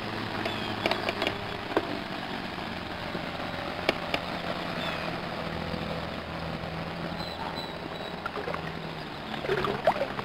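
Shallow lake water lapping and sloshing softly around a small child floating and kicking in arm floaties, with a few small sharp splashes or ticks. A low steady hum runs underneath.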